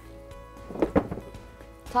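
Soft background music, with a brief thump and rustle about a second in as a heavy rolled rug is handled and unrolled.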